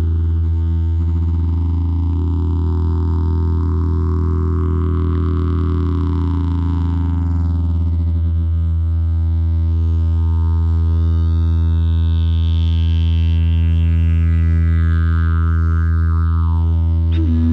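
Didgeridoo playing a steady low drone, its upper overtones sweeping up and down as the tone is shaped.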